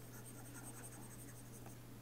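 Faint scratching of a stylus on a tablet as a dashed line is drawn: a quick series of light, short strokes over a steady low hum.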